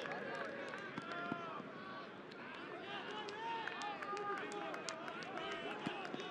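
Football stadium crowd: many voices calling and chattering at once, with scattered sharp clicks.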